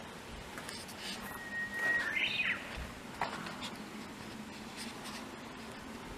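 A songbird's whistled song about two seconds in: one held steady note, then a quick higher warbling flourish. Light clicks and scuffs of footsteps sound around it.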